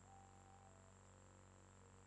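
Near silence: room tone with a low steady hum and a faint thin high whine, and very faint sustained notes that step down in pitch.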